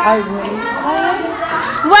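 A classroom of young schoolchildren chattering and calling out, many voices overlapping. Right at the end a woman shouts a greeting in Spanish.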